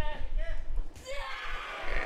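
A quiet voice talking in the background, fading about a second in.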